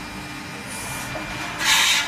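Automatic window-profile processing machine running steadily, with a short hissing burst near the end.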